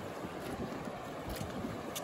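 Steady rush of a fast-flowing river over rocks, with some wind on the microphone.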